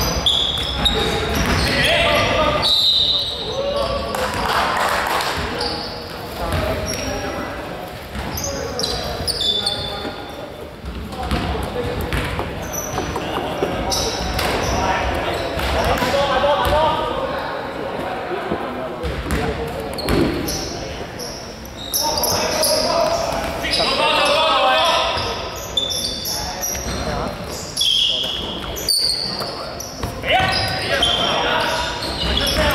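A basketball game in a large, echoing sports hall: players calling out, the ball bouncing on the wooden court floor, and short high squeaks of sneakers.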